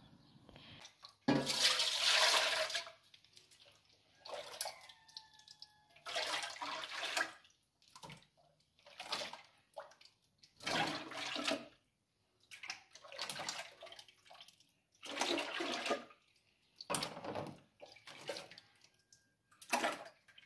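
Milk scooped with a plastic container and poured, splashing, in repeated pours about every two seconds.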